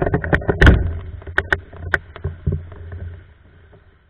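Windsurf board sailing fast over choppy water, heard through a rig-mounted action camera: wind buffeting the microphone, with a run of sharp knocks and splashes in the first two seconds. It all eases off about three seconds in.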